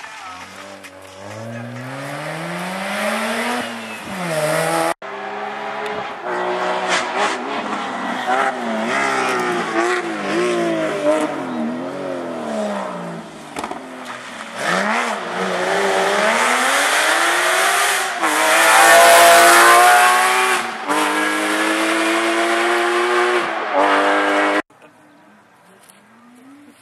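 Rally course cars, a Mazda RX-8 rotary and then a Porsche 911 flat-six, taking a tight hairpin. The engines rev down on the approach and rev up hard through the gears on the exit. The sound breaks off at an edit about five seconds in and cuts off suddenly near the end.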